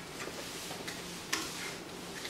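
Quiet classroom room tone with a steady low hum and a few faint ticks, one sharper click a little past halfway.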